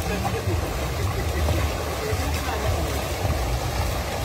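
Rushing river water with a steady low rumble, as a stream flows through rapids and over a small waterfall.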